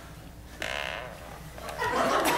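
A brief, faint vocal sound about half a second in, then theater audience laughter building near the end.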